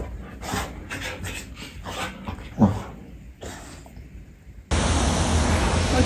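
A dog rolling about on a shaggy blanket, rustling and snuffling in short irregular bursts, with one short falling grunt about two and a half seconds in. Near the end it gives way suddenly to steady street traffic noise.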